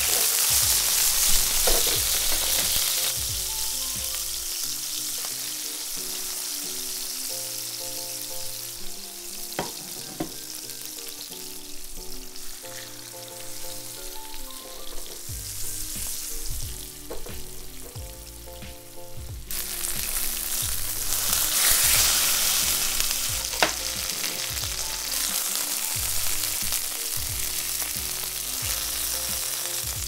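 Capers and thin chicken cutlets sizzling in oil in a nonstick frying pan, the sizzle quieter for a stretch and loud again from about two-thirds of the way in, with a few sharp clicks. Background music with a steady beat plays under it.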